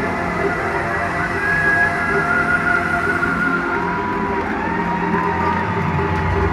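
Live pop concert music from an audience bootleg recording, with sustained pitched lines over a full band and crowd noise underneath.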